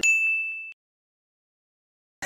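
A single high-pitched, bell-like ding sound effect, struck once and ringing out for under a second.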